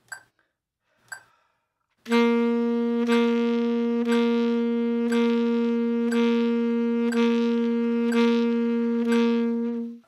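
Alto saxophone holding one sustained note, written G, with legato tonguing: a soft re-articulation on every metronome click, once a second at 60 beats per minute. Two metronome clicks sound alone before the saxophone comes in about two seconds in.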